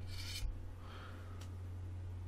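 Faint rubbing of a CD being handled for loading into the computer's disc drive, with a single click about one and a half seconds in, over a steady low electrical hum.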